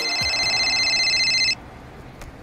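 An electronic mobile phone ring: a steady, high-pitched tone that cuts off suddenly about one and a half seconds in.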